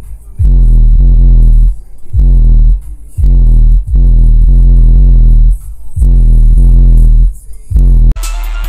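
Car stereo subwoofers playing bass-heavy electronic music at very high volume inside the car's cabin: deep bass notes held about a second each with short breaks between them, so loud they overload the recording.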